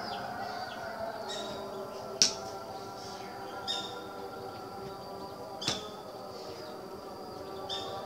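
Short bird calls a few times over a steady background drone, with two sharp clicks: the loudest about two seconds in and another near six seconds.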